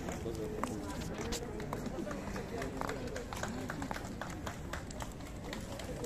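Low chatter of a small outdoor crowd of fans, voices talking over one another without pause, with scattered light clicks.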